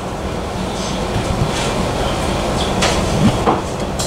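Steady rumbling background noise of a small takeaway shop, with a few brief rustles and clicks.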